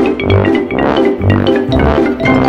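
Background music with a steady bass beat, about two beats a second.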